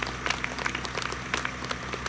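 Scattered clapping from an audience: a few irregular claps over a steady low hum.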